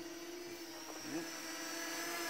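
Parrot Anafi quadcopter hovering low, its propellers giving a steady multi-tone whine that grows a little louder as it slowly turns and drifts closer.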